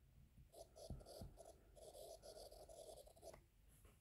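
Faint scratching and tapping of a stylus writing by hand on a tablet's glass screen: a run of short, irregular strokes from about half a second in until shortly before the end.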